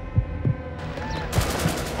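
A few low thuds, then about a second and a half in a rapid burst of machine-gun fire.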